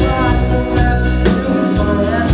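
Live indie rock band playing electric guitars, keyboard, bass and drums, with a lead vocalist singing over a steady drum beat.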